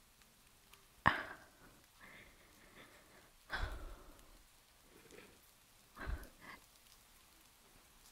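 A woman's soft breathy exhales and sighs close to the microphone: about five short breaths at irregular intervals, with quiet between them.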